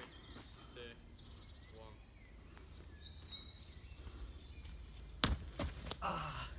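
Quiet outdoor ambience with faint distant voices, then about five seconds in a sharp thud and a couple of smaller knocks: a person falling onto tarmac after a parkour spin move goes wrong.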